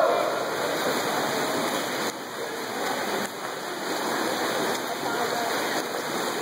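Swimmers splashing through freestyle strokes in an indoor pool: a steady, even wash of water noise.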